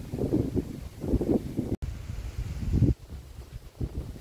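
Wind buffeting a phone's microphone in uneven gusts, with the sound cutting out for an instant just under two seconds in.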